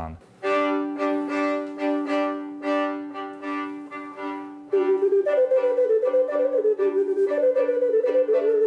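Violin and flute duet: the violin repeats short bowed notes on the same pitches about twice a second, and about halfway through the flute comes in louder on top with a wavering melody.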